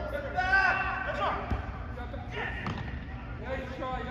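Players shouting calls to each other in a large indoor soccer hall, the voices echoing, with a single sharp thud of the ball being kicked about a second and a half in.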